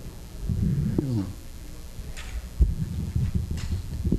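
Low, indistinct talk close to the microphone, with a single thump a little over halfway through.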